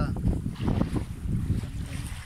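Wind buffeting the phone's microphone over small waves washing up on a sandy beach; the buffeting eases in the second half.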